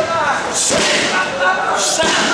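Two sharp slaps of strikes landing on Muay Thai pads, a little over a second apart.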